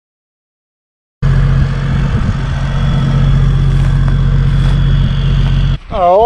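Vehicle engine running steadily at a constant pitch. It cuts in abruptly about a second in after silence and stops just before the end.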